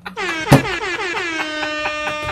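A male singer's long, high belted note in a pop ballad cover, sliding down in pitch and then held steady, with a sharp knock about half a second in.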